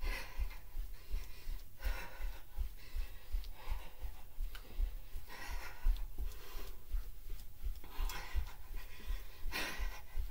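Heavy panting breaths from a person running in place, a breathy exhale every second or two, over the quick dull thuds of bare feet striking a carpeted floor.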